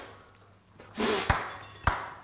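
Two sharp clicks about half a second apart: a small hard game piece striking and bouncing on a tabletop, with a short breathy sound just before.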